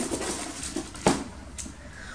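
Soft rustling of a ribbon bow and cardboard gift box being handled as the bow is untied, with one sharp click about a second in.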